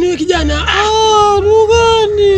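A high-pitched voice wailing in long, drawn-out notes that waver and slide, with a low bass beat underneath.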